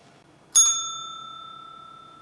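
A small bell struck once about half a second in, its clear high ring fading slowly over the following seconds.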